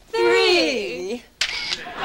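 A woman's drawn-out wordless vocal sliding down in pitch, then a sharp click, like a camera shutter, about one and a half seconds in.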